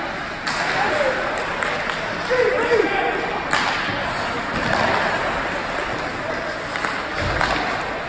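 Ice hockey rink during play: voices of spectators and players calling out over the hall's noise, with sharp knocks of sticks and puck, a loud one about half a second in and another about three and a half seconds in.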